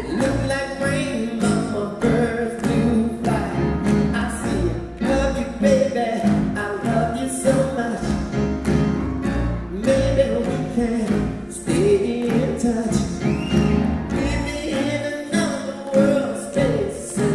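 Live solo piano playing rhythmic chords while a singer sings over it.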